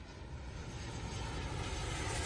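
An edited rising swell of rushing noise over a low rumble, growing steadily louder: a whoosh-like riser sound effect.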